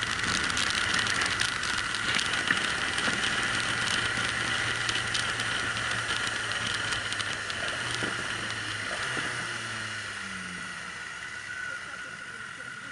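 Onboard sound of a motorcycle on the move: steady engine note under wind and road noise, with a few sharp clicks. The engine note drops about nine seconds in and the whole sound eases off toward the end as the bike slows.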